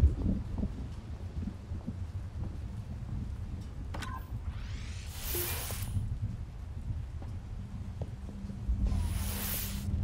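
Film soundtrack ambience: a low rumbling drone with two hissing swells, each about a second long, about five and nine seconds in, the first with a sweeping pitch. A steady low hum comes in near the end.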